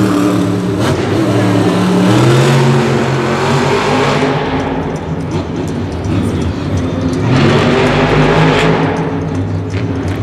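Monster truck's supercharged V8 engine revving hard on the dirt arena floor. It eases off a few seconds in and opens up again a couple of seconds later.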